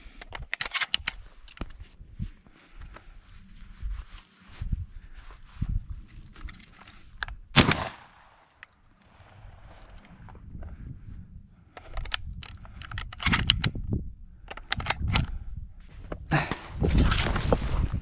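A single loud shotgun shot about seven and a half seconds in, with scattered knocks, clicks and rustling of movement and camera handling before and after it.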